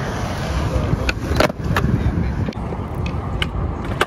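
Skateboard wheels rolling over rough concrete with a steady rumble, broken by several sharp clacks of the board, the loudest about a second and a half in.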